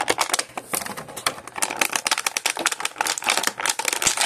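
Clear plastic blister packaging crinkling and crackling as fingers pry a figure out of its tray: a dense, irregular run of small clicks and crackles.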